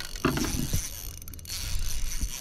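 Fishing reel being wound under the load of a hooked jewfish, its gears turning.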